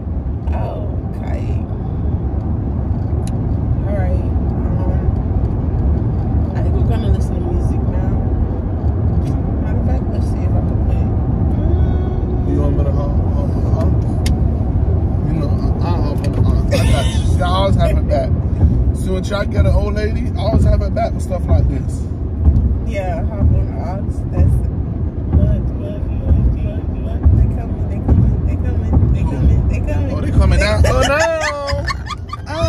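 Steady low rumble of a car's road and engine noise heard inside the cabin while driving, with voices humming or singing over it now and then, clearest in the middle of the stretch.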